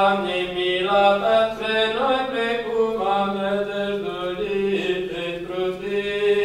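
Orthodox church chant: a single melodic line sung in phrases over a steady held low drone note.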